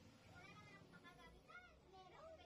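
Faint vocal sounds in the background: a few short calls that rise and fall in pitch, about three across two seconds.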